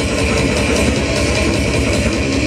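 Death metal band playing live: distorted electric guitar riffing over fast, dense drumming.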